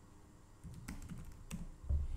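Typing on a computer keyboard: a handful of separate keystrokes starting about half a second in, the loudest one near the end.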